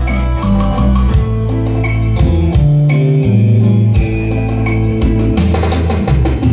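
Instrumental introduction of a Vietnamese ballad played live on a Yamaha electronic keyboard, with plucked guitar-like chords and a steady drum-kit beat from its accompaniment.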